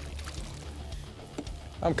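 A released walleye splashes at the water's surface beside a boat hull, with a sharp splash at the start, then water settling over a low steady rumble.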